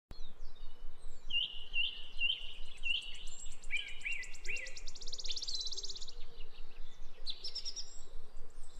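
Small birds calling and singing over a steady background noise. A run of four high, upswept chirps comes about half a second apart, then lower chirps. A fast, high trill lasts about three seconds through the middle, and more chirps come near the end.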